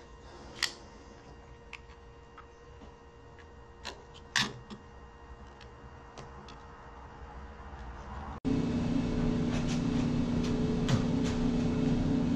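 Sporadic small clicks and taps of a hand-held electronics case and its wire being handled, the sharpest about four seconds in. After a sudden cut, a steady shop hum with a few light clicks as a small bracket is turned in the fingers.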